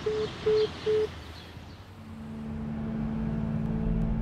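Three short, evenly spaced beeps at one pitch from a mobile phone as the call ends, over steady city street noise. About halfway, a low steady drone swells in, growing louder: the start of background music.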